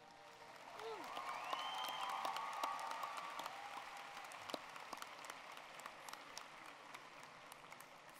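Audience applauding, swelling about a second in and slowly tapering off, with a few voices calling out in the crowd early in the applause.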